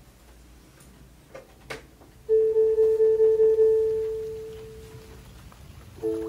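A single held musical note, a clear tone with faint overtones, starting suddenly about two seconds in after a couple of soft clicks, pulsing slightly and fading away over about three seconds.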